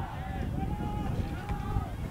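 Distant shouting of lacrosse players on the field over a steady low rumble of outdoor wind on the microphone.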